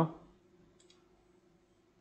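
A computer mouse button clicked, a quick faint double click under a second in, against near-silent room tone.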